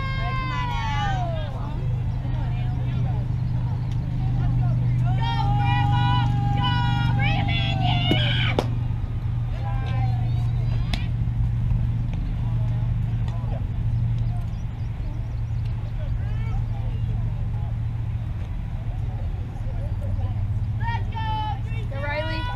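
Girls' voices calling out cheers and chants at a youth softball game, loudest in a run of drawn-out calls a few seconds in, over a steady low rumble. There are a couple of sharp knocks in the middle.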